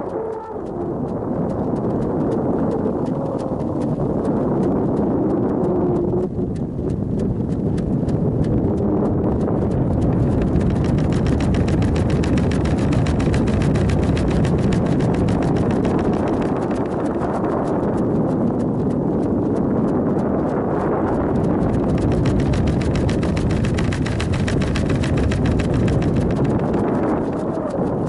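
Rushing noise with a dense, rapid clatter of fine clicks from a weather balloon payload's onboard camera microphone, as air buffets and rattles the payload in flight.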